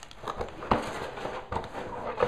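Handling noise of a toy unboxing: light knocks and rustling as packaging and Lego bags are moved about, with one sharper knock a little under a second in.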